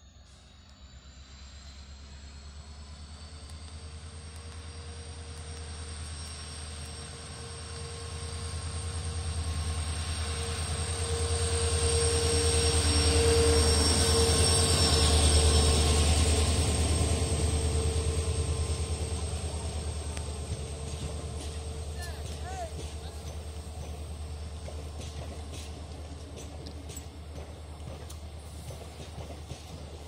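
WDP4D diesel-electric locomotive approaching and passing close by, its engine drone building to its loudest about 12 to 16 seconds in with a steady high whine over it. Its passenger coaches then roll past, the sound fading, with wheels clicking over rail joints near the end.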